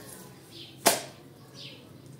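A single sharp slap about a second in, as the wet rubber-edged doormat is handled and pressed flat on the wet stone floor. Small birds chirp in the background, short high descending notes every second or so.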